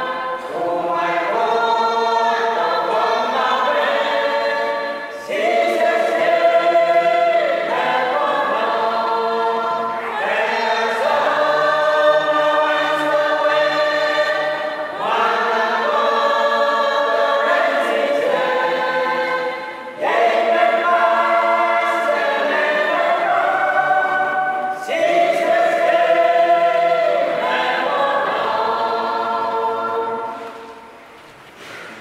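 A small group of men and women singing a hymn together, in phrases of about five seconds with a brief break between each; the singing ends at the close.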